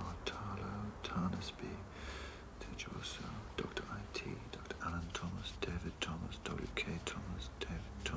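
A man muttering under his breath while he reads, with scattered soft clicks and rustles of thin directory pages being leafed through.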